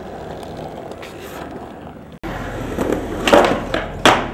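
Skateboard wheels rolling on concrete. After a sudden cut, louder rolling comes in, followed by a clatter of the board hitting the ground about three-quarters of the way through.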